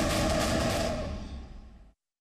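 Background music and a sound-effect swell from a TV news report, held steady for about a second and then fading out, cutting to silence near the end.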